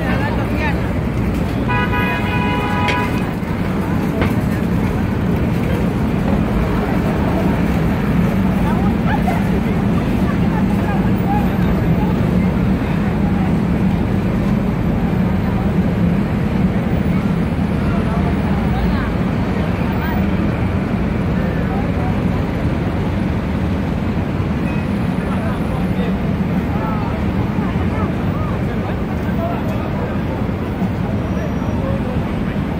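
Busy city street ambience: steady crowd chatter and traffic noise, with a vehicle horn sounding for about a second near the start.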